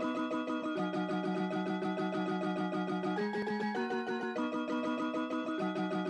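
Music: a plucked-string tune played in fast repeated notes, with the chord shifting every second or so.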